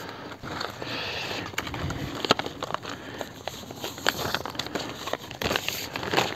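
A flat plastic Golden Spray sprinkler hose rustling and crackling as it is unrolled and dragged across dry tilled soil, with footsteps on the soil. Irregular small clicks and crinkles throughout, no steady tone.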